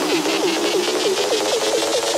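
Psytrance in a breakdown: a synth line of short, repeating downward pitch sweeps, about four to five a second, with the kick drum and bass dropped out.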